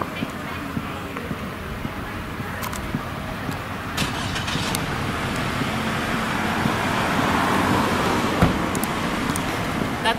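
Car traffic noise from a nearby road and parking lot, swelling to its loudest about seven to eight seconds in as a vehicle passes close, then easing off. A couple of short sharp clicks sound over it.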